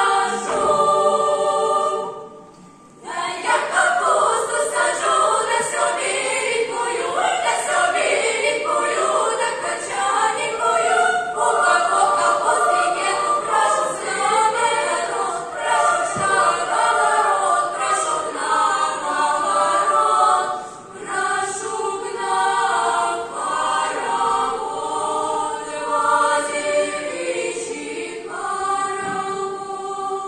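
Girls' choir singing in a concert hall, with a short break in the singing about two seconds in.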